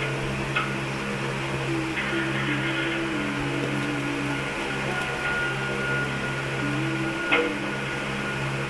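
A steady low hum with a faint tune wavering over it, and two short clicks, about half a second in and near the end, from cardboard paper-doll pieces being handled.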